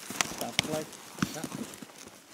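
A few sharp, irregularly spaced clicks and knocks, the clearest near the start and about a second in, with faint snatches of voice.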